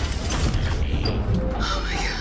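Film sound effects of a giant robot transforming: metallic clicks, ratcheting and whirring of mechanical parts shifting over a low rumble.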